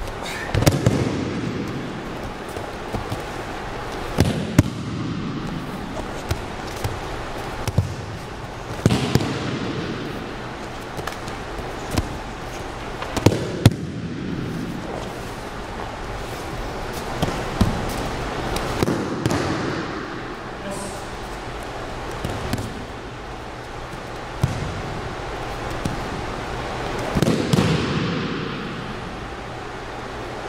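Repeated thuds and slaps of aikido throws and breakfalls on wrestling mats, a few seconds apart, each echoing briefly in a large gym.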